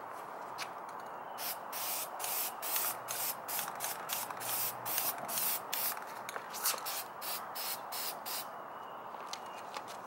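Aerosol can of Rust-Oleum high-heat spray paint sprayed in a rapid run of short hissing bursts, about two or three a second, from about a second in until near the end. It is laying a coat of matte black paint on a steel bracket.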